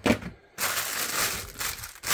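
Flat metal fish tins being pushed and stacked into a plastic fridge door shelf: a knock as the first goes in, then about a second and a half of scraping and rustling as they slide into place.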